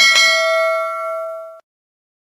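Notification-bell 'ding' sound effect: a single bell strike ringing with several clear tones, dying away over about a second and a half and then cut off suddenly.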